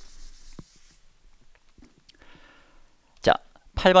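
Quiet room sound with a few faint taps, then a short vocal sound a little over three seconds in, and a man starting to speak near the end.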